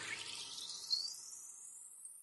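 End of a logo-sting jingle: the music dies away, leaving a hissy whoosh that sweeps steadily up in pitch and fades out, with a brief accent about a second in.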